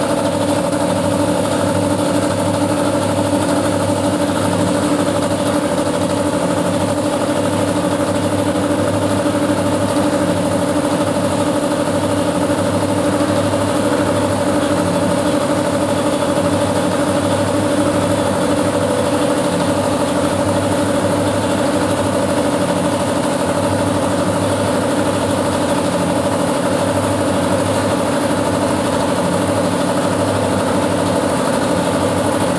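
Belt-driven two-stage reciprocating air compressor running steadily under its electric motor, the V-twin pump working at an even, unchanging pace.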